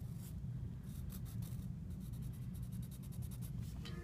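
Pencil scratching on sketchbook paper in a quick series of short, soft strokes, drawing in a lock of hair.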